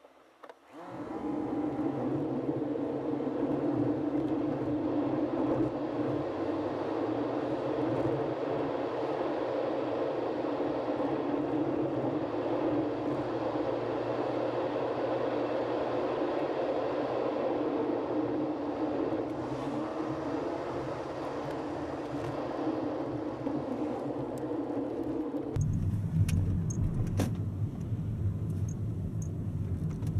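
Road and engine noise inside a Toyota Vellfire's cabin while driving, sped up to triple speed so it sounds higher-pitched. About 25 seconds in it switches to normal speed: a lower, deeper rumble with a couple of clicks as the van rolls slowly.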